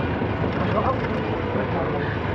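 A car running at low speed, with a steady hum of engine and road noise heard from inside the cabin.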